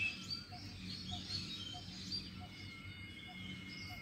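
Faint birdsong over steady outdoor background noise: scattered high chirps and short whistles, with a soft low note repeating about three times a second.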